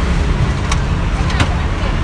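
Steady low rumble of road traffic passing close by, with two brief sharp clicks, one about a third of the way in and one about two thirds of the way in.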